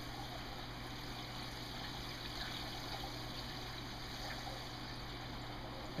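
Water running steadily into an acrylic aquarium sump as it fills.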